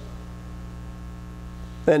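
Steady electrical mains hum, a low buzz made of evenly spaced steady tones, picked up in the recording. A man's voice starts again near the end.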